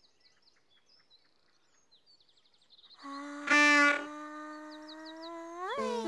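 Faint birdsong chirping for about three seconds, then a musical sound effect: a held note that slowly slides upward in pitch, with a loud burst about half a second in and a quick upward swoop near the end.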